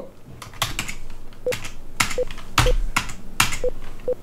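Computer keyboard being typed on: a string of separate keystroke clicks at an uneven pace.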